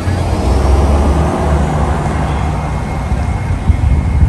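Steady low rumble of vehicles on a street, with engine and traffic noise picked up on a phone microphone.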